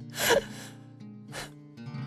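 A man's loud, shaky, sob-like gasp of breath, then a fainter second breath about a second later, over soft sustained background music chords.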